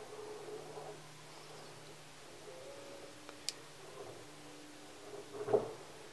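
Quiet background with a faint steady low hum and faint wavering tones, broken by a single sharp click about three and a half seconds in.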